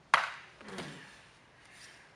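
A sudden sharp burst of noise that fades quickly, then a softer scuff: two grapplers' bodies and clothing shifting and rubbing against the mat as a guillotine is turned through.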